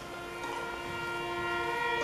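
Student string orchestra (violins, cellos, double bass) holding a soft sustained chord, which comes in about half a second in after a brief hush.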